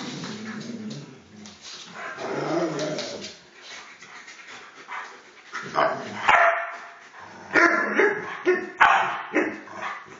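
Alaskan malamutes play-fighting and vocalising, with lower drawn-out sounds in the first few seconds, then a run of short, loud barks in the second half.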